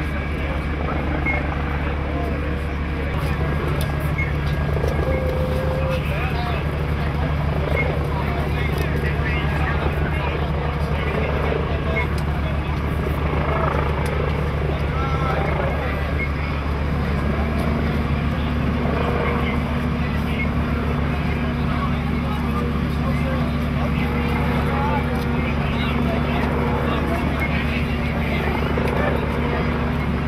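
A steady low engine drone with a fast low pulse runs throughout, and a higher hum joins a little over halfway. Indistinct voices of rescue workers sound faintly over it.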